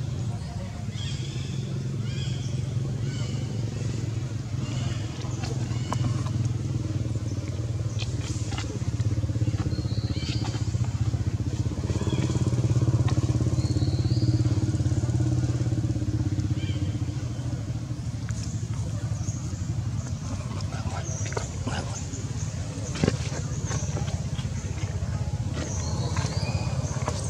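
A motor vehicle's engine running steadily nearby, a low drone that grows louder about halfway through and then eases back. Faint voices and a few short high chirps are heard over it.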